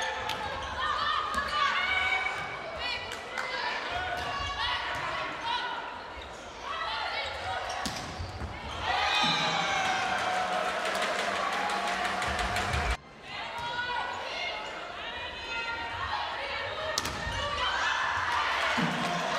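Indoor volleyball rally in a large sports hall: sharp slaps of the ball being struck over a packed crowd's shouting and cheering. The cheering swells into a loud sustained cheer about nine seconds in, which cuts off suddenly around thirteen seconds.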